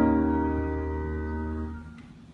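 The final chord of a piano-sounding keyboard accompaniment, held and slowly fading away to end the song; it dies out just before the end.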